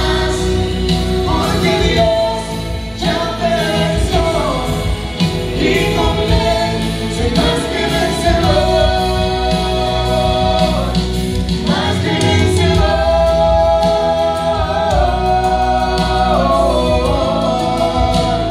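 A man and a woman singing a gospel worship song as a duet over live band accompaniment, holding long notes with vibrato.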